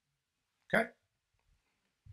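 A man's single short, sharp vocal sound, a clipped syllable or grunt, just under a second in.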